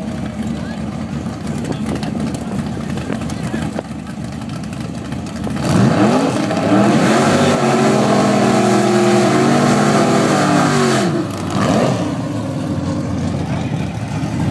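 Drag car doing a burnout. Engines idle at first; about six seconds in, one engine revs up and holds high revs for about five seconds with the tyres spinning in smoke, then drops back, with a short blip of the throttle after.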